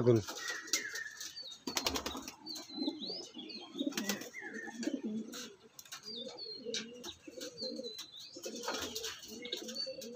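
Andhra pigeons cooing, low burbling coos repeating over and over, with a few sharp clicks and wing flutters. Several short high chirps come from smaller birds.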